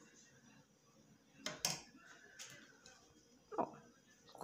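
Small scissors snipping sewing thread close to the fabric: two sharp snips in quick succession about a second and a half in, with faint handling of the cloth.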